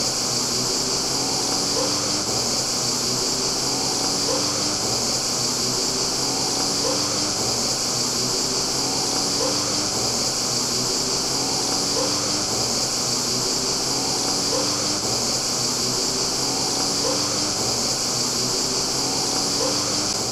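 Steady, high-pitched chorus of cicadas, with a faint low rising tone repeating about every second and a half beneath it.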